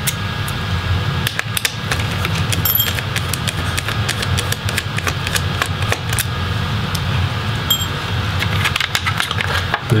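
Small Phillips screwdriver turning out the screws of a Dell Inspiron 7773's hard drive caddy, heard as a scatter of light irregular clicks and ticks of metal on metal and plastic, over a steady low hum.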